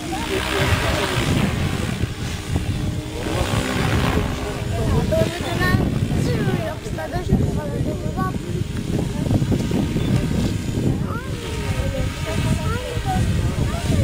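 Electric Goblin 700 RC helicopter's rotor blades whooshing in surges as it flies aerobatic manoeuvres overhead, loudest about half a second in, around three to four seconds in and again near the end. Wind rumbles on the microphone throughout.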